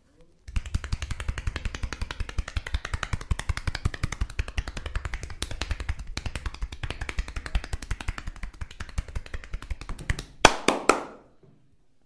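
Rapid percussive massage with the hands on a bare back: a fast, continuous patter of hand strikes on skin, ending with a few louder, sharper slaps near the end.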